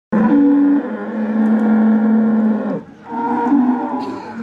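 Bull bellowing: two long, steady calls, the second starting about three seconds in after a brief break.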